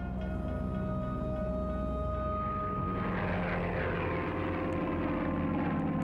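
Propeller aircraft engine running steadily, its noise growing fuller about halfway through, with music underneath.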